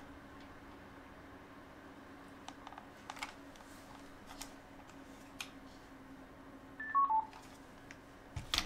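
Three quick electronic beeps falling in pitch, about seven seconds in, over faint room tone with a low steady hum and a few soft clicks.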